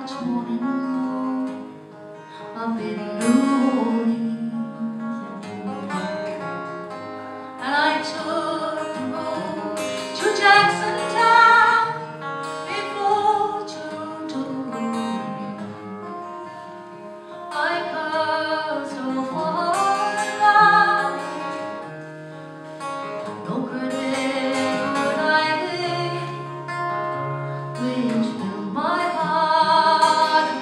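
A woman singing a traditional folk ballad live, accompanying herself on a capoed acoustic guitar. The voice comes in phrases of a few seconds with short breaks between, over the continuous guitar.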